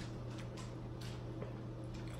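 Faint scattered clicks and rustles of hands peeling boiled shrimp and handling food in a foil pan, over a steady low hum.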